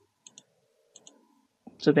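Computer mouse clicking faintly: two quick double clicks about a second apart.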